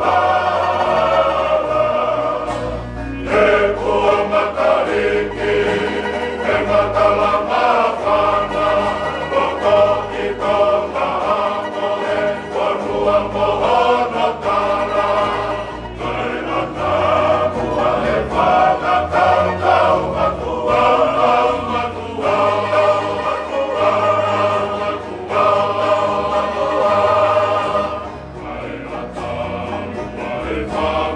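A Tongan kava-club men's choir singing in harmony to strummed acoustic guitars.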